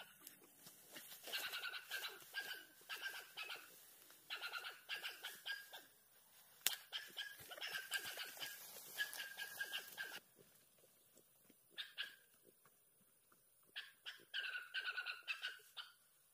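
An animal calling again and again in short runs of high, pitched notes, with pauses between the runs, over light crackling and clicking.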